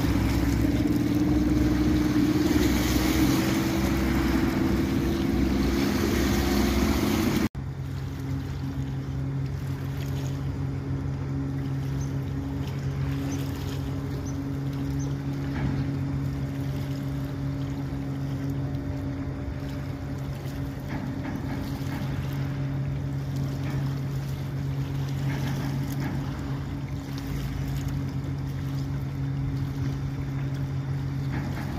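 A small speedboat's engine running hard as it passes at speed, its pitch rising slightly. After a sudden cut about seven seconds in, a large passenger express boat's engines drone steadily with a low hum as it cruises by.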